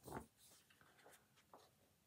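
Faint paper handling of a comic book being lowered and moved: a soft bump about a quarter second in, then a few light scrapes and clicks.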